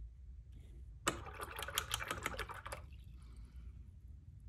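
A rapid rattle of light, sharp clicks lasting nearly two seconds, starting about a second in, from something hard being handled on the painting desk.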